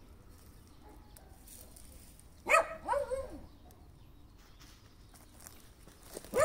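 A dog whining: two short cries falling in pitch, about two and a half seconds in.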